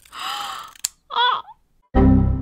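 A breathy gasp and a single sharp snip of scissors cutting through a lock of bangs, then a short vocal cry that slides up and down. Something loud and musical cuts in right at the end.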